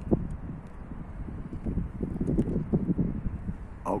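Handling noise on the phone's microphone: irregular soft knocks and a low rumble as the camera and phone are held and adjusted by hand.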